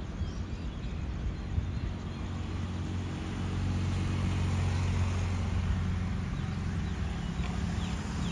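Distant QSY-class diesel-electric locomotive engine droning steadily as the express train approaches, growing slightly louder about halfway through.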